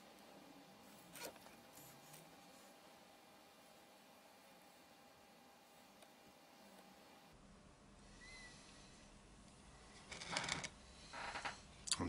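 Near silence in a small workshop, broken by faint taps of a wooden stick pressing metal-powder epoxy into drilled holes, and a few louder scrapes of the stick near the end.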